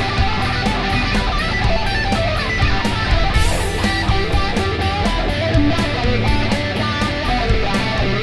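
Rock song with strummed electric guitar and bass over a steady beat, with a crash about three and a half seconds in.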